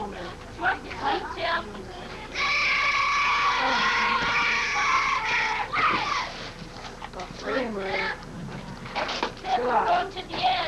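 Children's voices shouting and chanting from the dugout, with a long held chant in unison starting about two and a half seconds in and lasting some three seconds.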